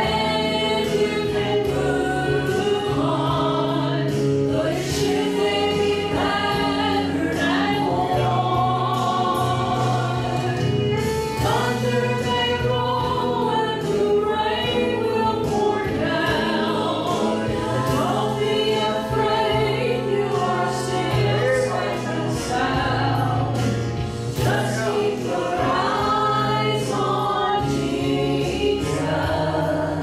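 Three women singing a gospel song together in harmony into microphones, over musical accompaniment with steady low bass notes.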